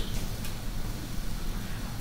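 Steady background room noise with a low hum and hiss; no distinct sound event.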